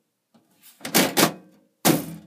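Several sharp metallic knocks and clacks about a second in, and another near the end, each with a brief ring: a sheet-metal computer case being handled.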